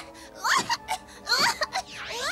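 A cartoon baby's voice giving two short, high wailing cries about a second apart, over background music.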